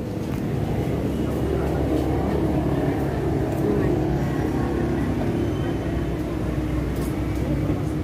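A steady low rumble under faint, indistinct voices.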